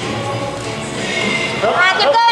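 Gymnastics hall ambience with faint background music and chatter, then near the end loud, high-pitched whooping cheers from spectators that rise and fall in pitch.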